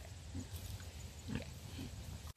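Pigs grunting softly, a few short low grunts.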